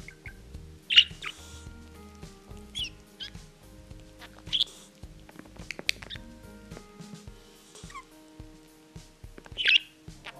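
Budgerigar giving short, sharp chirps, about five spread through, the loudest about a second in and near the end, over soft background music.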